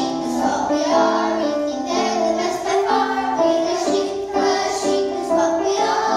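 A small children's choir singing a song together, moving through a string of held notes.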